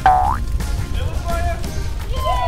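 A cartoon boing sound effect right at the start, a short springy note that dips and then rises in pitch, over background music with a steady beat.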